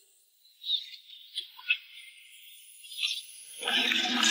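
A few faint, light clinks, then a louder rattling clatter building near the end: jewelry and gift boxes being thrown and knocked about.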